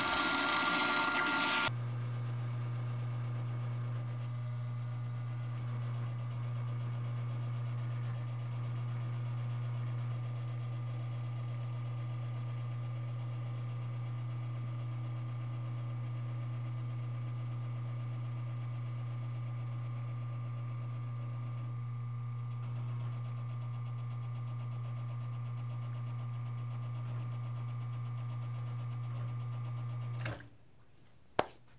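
A Rocket Fausto coffee grinder grinds into a portafilter for under two seconds, then the Rocket R60V espresso machine's vane pump runs with a steady low hum while pulling a pressure-profiled shot, its tone shifting slightly about two-thirds of the way through.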